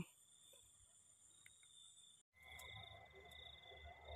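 Near silence with faint, steady chirring of field crickets. About halfway through a brief dropout, and a faint low rumble follows.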